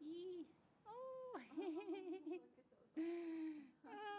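Giant panda bleating: a short call, then a rising call that breaks into a quavering bleat, and a long steady call near the end.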